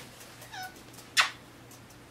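A cat gives a brief, faint mew, then comes a loud, short smack of a kiss planted on the cat.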